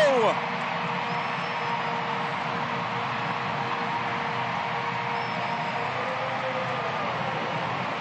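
Stadium crowd cheering steadily after a home-team goal in a women's professional soccer match, an even wash of many voices with no single voice standing out.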